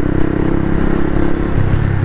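125cc motorcycle engine running at a steady note while riding, with wind rumble on the microphone; the engine note shifts near the end.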